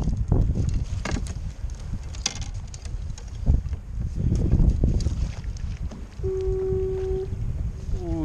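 Wind buffeting the microphone and choppy water slapping against a kayak's hull, with scattered knocks and clicks from a landing net and fishing gear being handled. A steady one-second tone sounds about six seconds in.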